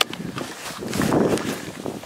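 Camera handling noise: a sharp click at the start, then rustling and rubbing of waterproof jacket fabric and a knit glove close to the microphone as the camera is moved.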